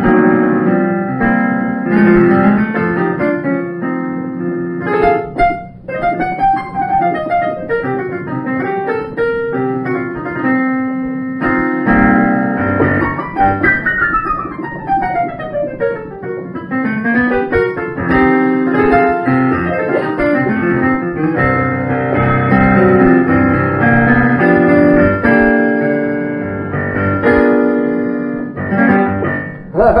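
Boogie-woogie piano played solo. The bass notes keep going under fast falling and rising right-hand runs in the middle, and the playing stops near the end.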